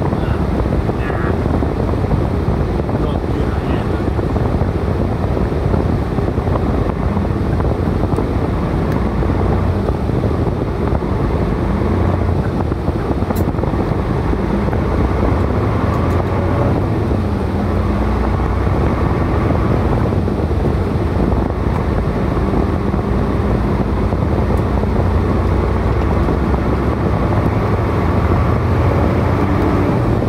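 Heavy truck's engine and road noise heard inside the cab: a steady low rumble as the truck pulls away and drives on, the engine's pitch shifting a few times along the way.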